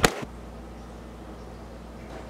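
A brief sharp click at the very start, then a faint, steady low hum with light hiss.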